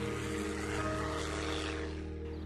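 Propeller airplane engine running with a steady drone, under background music.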